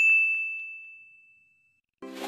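A single bright bell ding, the sound effect for a subscribe button's notification bell being clicked. It rings on one high tone and fades away over about a second and a half.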